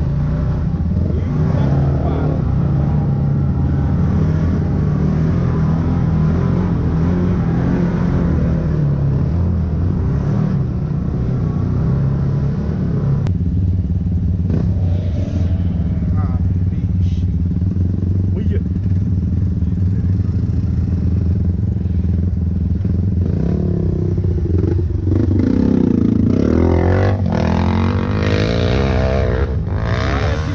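Can-Am Maverick X3's turbocharged three-cylinder engine running steadily as the side-by-side drives down a dirt trail, heard from the cockpit. Near the end the engine revs up and down a few times.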